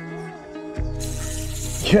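Background music with plucked guitar-like notes; about a second in, a sudden splash as a chub strikes a topwater frog lure at the surface, followed by a shout of "Yes!".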